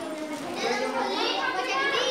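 Several children talking and calling out at once in high voices, louder from about half a second in.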